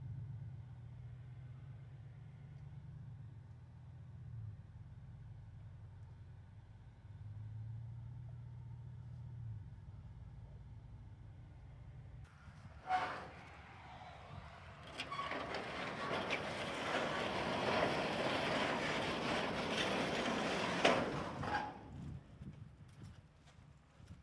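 A GMC Sierra AT4 pickup pulling an enclosed cargo trailer: a low engine hum with two brief rises in pitch. About halfway through there is a single knock, then a louder rushing noise for several seconds that fades out near the end.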